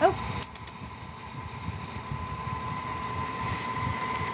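Steady fan-like background hum with a thin constant high tone and a faint uneven low rumble, a few soft clicks about half a second in.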